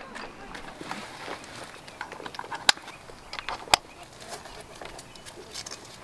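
Handlebar dog basket being fitted to a bicycle: two sharp plastic clicks about a second apart midway, among a few faint handling ticks, as the basket's mount is snapped onto its bracket.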